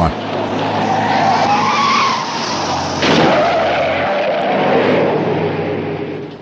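Car tires squealing in a skid, with road and engine noise, from a film's chase soundtrack. The wavering squeal rises and falls, grows louder again about three seconds in, and fades near the end.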